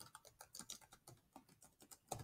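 Faint typing on a computer keyboard: a quick, irregular run of keystrokes, several a second.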